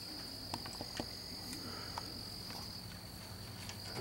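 Insects chirring in one steady high-pitched drone, with a few faint clicks.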